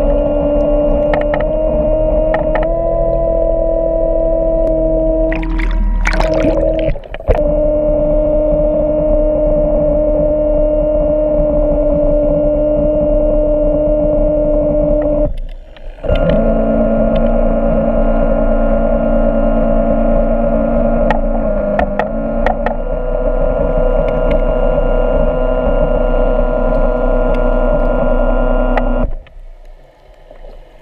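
Underwater scooter (diver propulsion vehicle) motor whining steadily, heard through the water. Its pitch steps slightly a few times and it cuts out briefly about halfway through. It stops abruptly near the end as the trigger is released.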